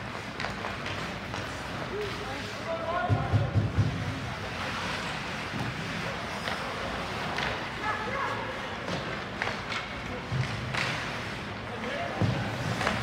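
Ice hockey game sound in an indoor rink: sharp clacks of sticks and puck now and then, a few dull thuds about three seconds in, and distant shouts from players and the bench over the rink's steady noise.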